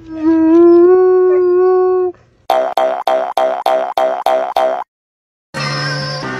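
A black Labrador retriever howling in one long pitched note that rises slightly. After a short break it gives a quick run of about nine short howling woofs, some four a second. Music comes in near the end.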